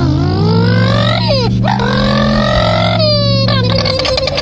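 A puppy howling in two long, slowly rising howls, then a shorter higher cry near the end, over a steady low hum.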